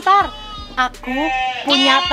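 Young livestock bleating close by: a short call at the start and a longer, louder one near the end.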